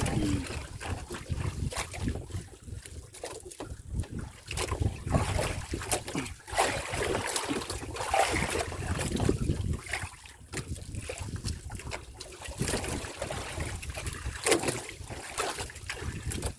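Water slapping and splashing against the hull of a small wooden outrigger boat on choppy sea, with wind rumbling on the microphone; the sound comes in uneven surges, with scattered small knocks.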